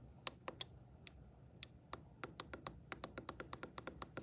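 Faint plastic clicks of the buttons on a CareSens N blood glucose meter pressed repeatedly to step through the date setting: a few scattered clicks, then a quick run of about six a second from about two seconds in.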